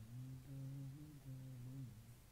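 A low voice humming softly in held phrases of about half a second each, with the pitch bending slightly between them.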